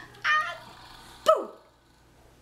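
A toddler squeals twice while laughing. The first squeal is short and high, and the second, about a second later, starts sharply and falls fast in pitch.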